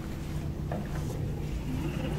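Steady low hum of room noise with a couple of faint clicks.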